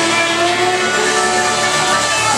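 Live band playing with electric guitars and bass in a loud, dense mix, sustained notes running on without a break and no singing.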